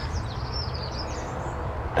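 A small songbird singing: a quick run of high, short chirps through most of the first second and a half, over a steady low background rumble.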